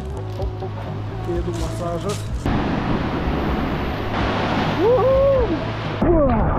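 Sea surf washing and sloshing right around the camera, starting abruptly about two and a half seconds in. Before that, quieter background music. Near the end comes a single drawn-out rising-and-falling voice call.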